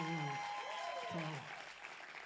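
Audience applauding in a hall, with a woman's voice over a microphone briefly on top; the applause fades toward the end.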